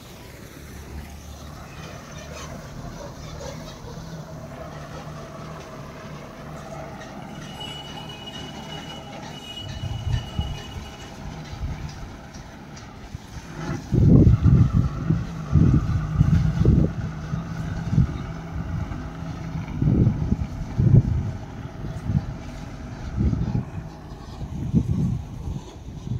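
A vehicle engine runs steadily with a low hum. About halfway through, loud irregular low thumps and rumbles take over.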